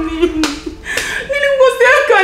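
A woman talking in a high voice, with one sharp smack, like a hand clap, about half a second in.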